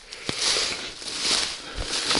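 Footsteps through dry fallen leaves and cut brush, rustling and crackling in a few swells.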